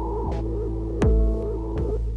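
Electronic jam on small synthesizers and a Pocket Operator drum machine: a steady droning synth chord with a wavering tone on top. A kick drum with a falling pitch sweep hits about a second in, with fainter noise-like drum hits around it.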